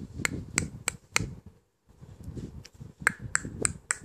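Baby sucking on its fist, making sharp smacking clicks about three a second: a run of four, a short pause, then four more near the end.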